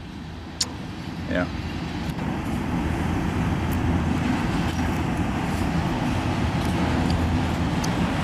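Freight train of tank cars and multilevel autorack cars rolling past, a steady rumble of steel wheels on rail that grows louder over the first few seconds and then holds.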